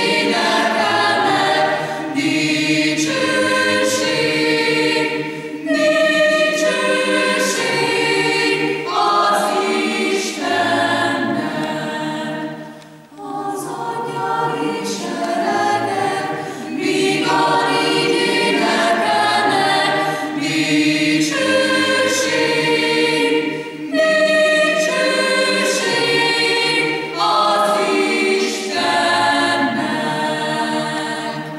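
Mixed choir of women's and men's voices singing in sustained phrases, with a short breath break about thirteen seconds in.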